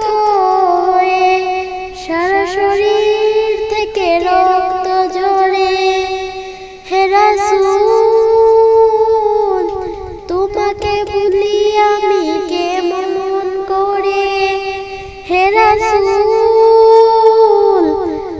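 A woman singing a Bengali song in a high voice, holding long notes with small ornamental turns, in phrases of two to four seconds with brief breaths between.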